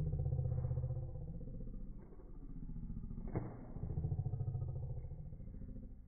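A low motor-vehicle engine rumble that swells twice, with one sharp click a little past halfway.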